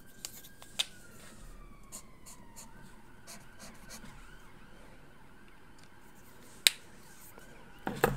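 A faint, high, siren-like tone that slides down in pitch over a couple of seconds and then holds steady, under scattered light clicks and taps, with one sharper click near the end.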